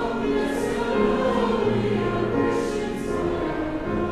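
Church choir and congregation singing a hymn together in slow, held notes.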